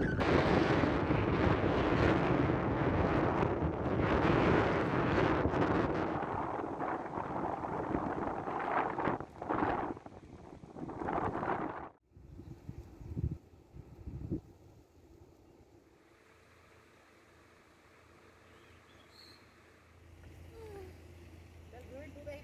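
Strong wind buffeting the microphone over the sound of sea surf on a beach, a loud steady rush. About twelve seconds in it cuts off suddenly to a much quieter outdoor background with a few brief knocks.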